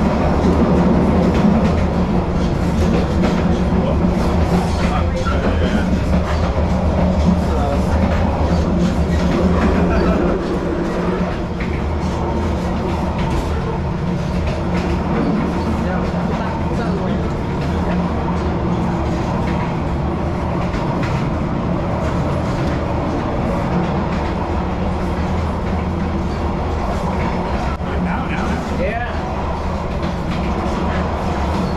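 Steady rumble of a passenger train running, heard from the vestibule by the carriage doors, a little quieter after about ten seconds.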